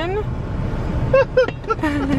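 Steady low rumble heard inside a car's cabin, from the car's engine and the traffic around it, with brief snatches of voices over it.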